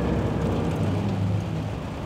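Volvo 440 truck's diesel engine running steadily, heard from inside the cab while driving, with tyre and rain noise from the wet road.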